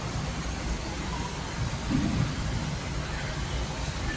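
Steady low background noise with a short low sound about two seconds in.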